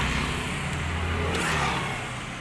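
Four-stroke LML scooter engine running steadily at idle, a low even hum.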